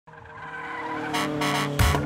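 Intro music fading in, with short screeching bursts like a car tire-screech sound effect about a second in, and a heavy bass beat starting near the end.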